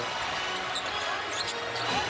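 A basketball being dribbled on a hardwood court, over the steady noise of a large arena crowd.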